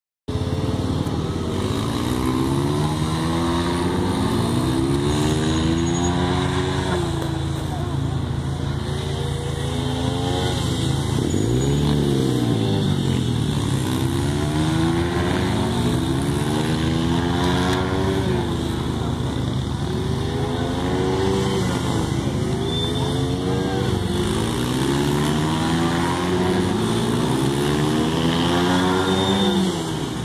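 Several dirt bike engines running and revving together, their pitch climbing again and again as they accelerate and change gear, with one rising-and-falling sweep as a bike passes close about twelve seconds in.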